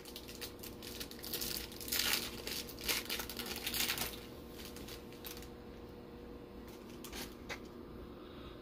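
A Topps Finest baseball card pack being torn open, its wrapper crinkling and tearing in a string of bursts for the first five seconds or so, then only faint handling.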